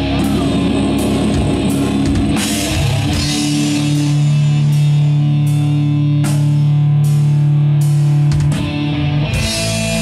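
Live doom metal band playing loudly: distorted electric guitars and bass over a drum kit. About three seconds in the band settles into a long held chord, marked by cymbal crashes, and goes back to riffing near the end.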